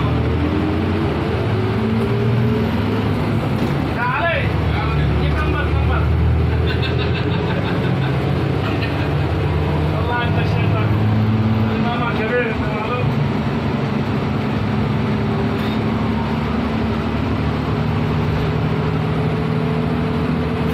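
Minibus engine and road noise heard from inside the cabin while driving, the engine note rising in pitch as the bus picks up speed, at the start and again near the end. Voices talk briefly in the background.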